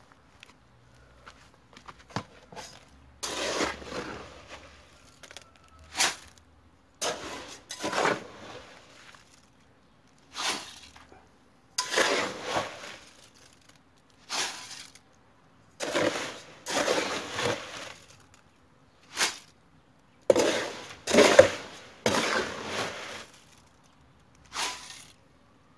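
Gravelly concrete mix being tipped into a fence-post hole, load after load: about ten separate short, rattling pours with pauses between them.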